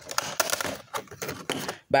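Clear plastic blister pack of batteries being handled, with crackling and a quick run of small clicks and taps. A voice starts near the end.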